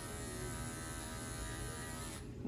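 An electric dog-grooming clipper fitted with a #10 blade, running with a steady hum while held clear of the coat.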